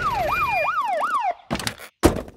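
Cartoon police car siren wailing quickly up and down, about three sweeps a second, then cutting off a little over a second in. A couple of short thunks follow near the end.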